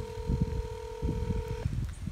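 Ringing (ringback) tone of an outgoing call heard through a mobile phone on speakerphone: one steady tone of about two seconds that cuts off suddenly near the end. Irregular low thumps from wind or handling on the microphone run underneath.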